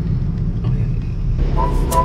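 Low, steady rumble of a car's engine and tyres heard from inside the cabin. Background music with a melody and a beat comes in about one and a half seconds in.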